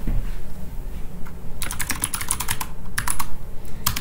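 Computer keyboard typing: a quick run of keystrokes begins a little before halfway through, followed by a brief pause and one or two last strokes near the end, as a short terminal command is typed and entered.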